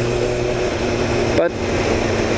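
Motorcycle engine running at a steady pitch while riding, with wind rush over the microphone.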